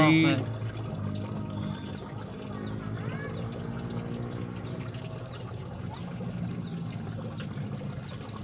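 Faint trickling water with indistinct distant voices.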